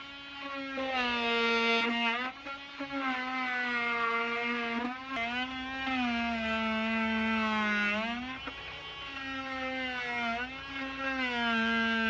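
Makita oscillating multi-tool cutting through wooden window trim: a steady buzzing whine whose pitch sags briefly several times as the blade bites into the wood.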